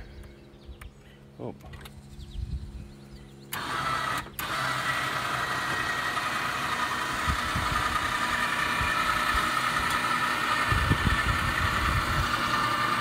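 Can-Am Outlander 1000R ATV's Rotax V-twin engine coming on about three and a half seconds in, after a low steady hum, then running steadily. It cuts out briefly just after it starts and grows slightly louder towards the end.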